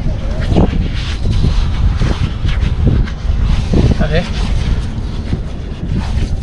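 Wind buffeting the microphone with a steady heavy rumble, over which bare hands scoop and scrape into wet beach sand while digging out a burrowing creature. A short exclamation about four seconds in.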